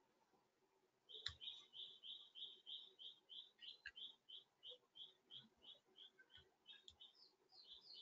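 Faint bird chirps: a run of short, evenly spaced high notes, about three or four a second, starting about a second in and growing fainter toward the end, with a faint click near the start.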